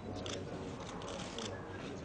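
Camera shutters clicking in two short bursts, one near the start and one past the middle, over a low murmur of voices.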